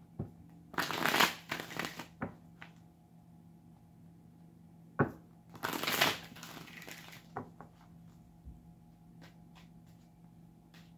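Two riffle shuffles of a tarot deck on a tabletop: a rapid flutter of cards about a second in and again about five seconds in, with light taps of the cards between and after.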